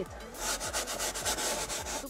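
A bristle brush scrubbing the wet, foamed fabric insert of a car seat in quick, even back-and-forth strokes, working a diluted upholstery cleaner into the textile.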